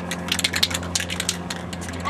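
Aerosol spray can being shaken, its mixing ball rattling inside in quick, irregular clicks; the can won't spray.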